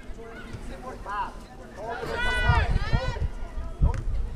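A person shouting, with no clear words: one short call about a second in, then a longer drawn-out shout through the middle. A low, uneven rumble on the microphone starts halfway through, and there is a sharp click near the end.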